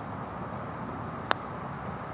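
A golf putter strikes a ball once: a single short, crisp click about a second and a quarter in, over a steady low background rumble.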